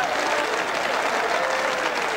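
Congregation applauding, with a few voices calling out over the clapping.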